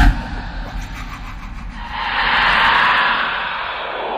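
Intro sound effects: a low thud right at the start, then a whoosh that swells up about two seconds in and fades away.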